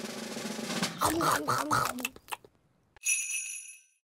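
Cartoon sound track: a drum roll builds for about a second, then a short stretch of music and voice follows. After a brief gap, a bright chime rings for the last second and fades away.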